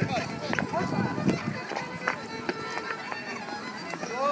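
A solo fiddle playing a traditional dance tune for rapper sword dancing, with sharp taps from the dancers' shoes on the paving.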